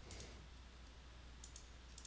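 Faint clicks of a computer mouse in three quick double clicks, one pair at the start and two near the end, over a low steady electrical hum.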